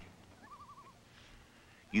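Faint quavering call of a bird: a wavering tone lasting about half a second, starting about half a second in.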